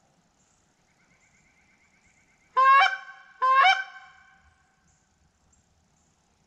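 Two loud, goose-like honks a little under a second apart, each starting with a sharp upward break. A faint high chatter comes before them.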